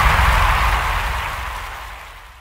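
A rushing whoosh with a deep rumble underneath, fading away steadily over about two seconds: a sound-effect swell for an on-screen award reveal.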